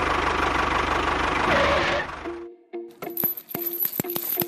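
A tractor engine running with a fast, even firing beat, cutting off suddenly about two and a half seconds in. Near the end, background music with a steady plucked beat and clicks starts.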